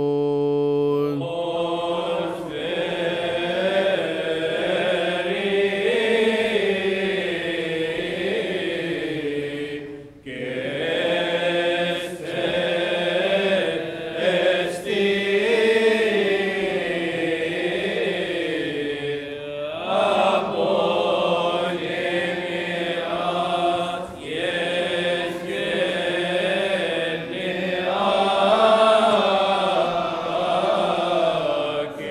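Coptic Orthodox liturgical chant: voices sing a slow melody, drawing each syllable out over wavering held notes. They pause for breath briefly about ten seconds in and again near twenty seconds.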